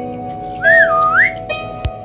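Soft instrumental background music with sustained keyboard notes, over which a whistle-like tone swoops up, dips and rises again about half a second in. A single sharp click comes near the end.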